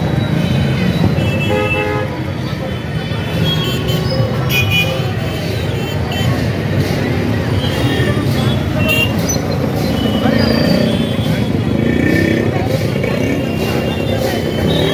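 Busy street traffic of cars and motorbikes with vehicle horns honking several times, over steady crowd chatter.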